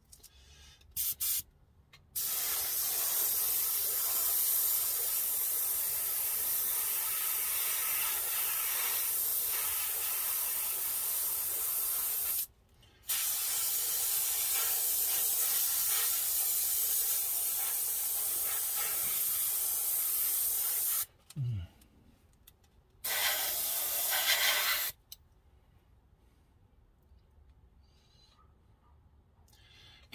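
Airbrush spraying heavily thinned enamel paint: a steady hiss of air and atomised paint in two long passes of about ten and eight seconds, after two short blips at the start, then one shorter burst a few seconds before it falls quiet.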